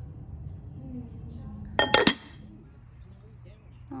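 Two quick clinks of glass or ceramic about two seconds in, each ringing briefly.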